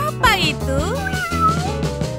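Cat meowing, its calls sliding up and down in pitch, over background music.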